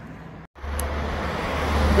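Street traffic noise as picked up by a smartphone microphone at night, with a strong steady low rumble. It cuts out briefly about half a second in and returns louder.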